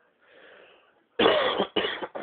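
Three loud coughs in quick succession, the first the loudest, after a soft rustle near the start.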